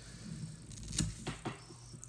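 Scissors snipping a clump of bleached elk hair from the hide: a few short, sharp clicks, the loudest about halfway through, over a low steady hum.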